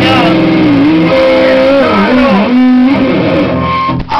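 Loud distorted electric guitar played through an amp, holding sustained notes that bend in pitch, cutting out near the end.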